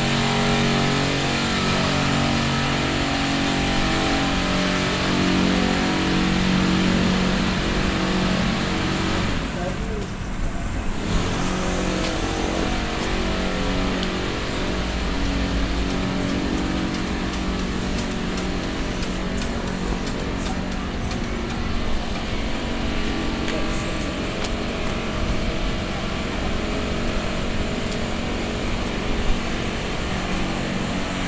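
Urban street traffic: motor vehicle engines running steadily, with a constant low, pitched hum.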